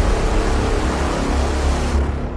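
Dramatic intro music: a loud hiss-like wash over a deep, steady low drone with held tones above it, the high hiss falling away at the very end.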